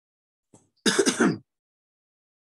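A man clearing his throat once, a single short rasping burst about a second in.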